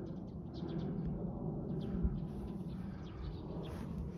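Small birds chirping in scattered short calls, over a low, steady rumble.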